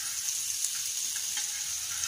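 Butter sizzling as it melts on a hot flat non-stick griddle, a steady high hiss, with a metal spoon lightly scraping it across the pan a few times.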